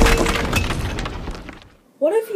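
The tail of a boulder crashing through a ceiling: breaking debris clattering and settling with scattered sharp clinks, the crash dying away and fading out near the end.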